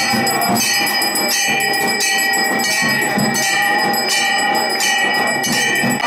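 Temple bells ringing continuously for the evening aarti, struck again about every 0.7 s so that a bright, sustained metallic ring never dies away.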